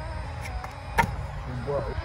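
Stunt scooter wheels rolling over concrete with a low rumble, and one sharp clack about a second in.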